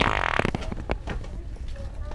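Fake wet fart from a handheld fart-noise toy, "The Sharter": one loud burst lasting about half a second.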